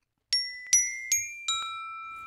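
Sampled glockenspiel from the VSCO 2 Community Edition orchestral library: four single notes struck about 0.4 s apart, each left ringing with a bright, bell-like tone.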